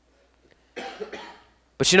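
A man's short cough, about three quarters of a second in, heard close on the microphone, followed by him starting to speak.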